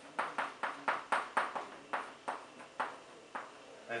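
Chalk striking and tapping on a blackboard while writing a formula: a rapid, uneven run of about fifteen sharp taps that thin out toward the end.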